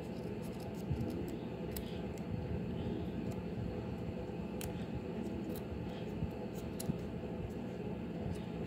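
A small pair of scissors trimming patterned paper along the edge of a wooden clothespin, in a run of small, irregular snips.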